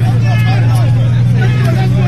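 Armoured military truck's engine running with a steady low drone, with several men's voices talking over it.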